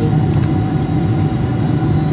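Jet airliner cabin noise on approach: a steady low drone of engines and airflow heard from inside the cabin, with a faint constant whine above it.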